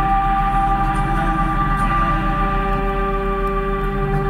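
Live improvised band music with an ambient, droning sound: several tones held steadily over a continuous low bass.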